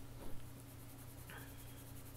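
Faint scratching of an orange watercolour pencil on watercolour paper as it colours in an area.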